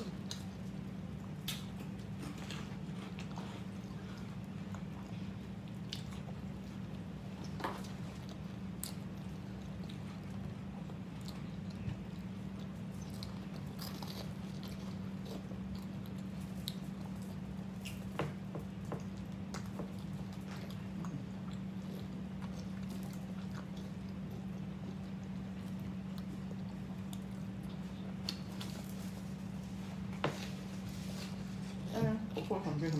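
Chewing and biting of French-bread hoagie sandwiches close to the microphone: scattered short wet smacks and crunches over a steady low hum.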